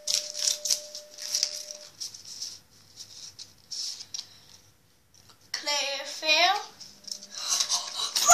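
Pokémon trading cards being flicked through one after another in the hands: a string of quick papery snaps and rustles. A child's voice comes in briefly about two-thirds of the way in and again at the very end.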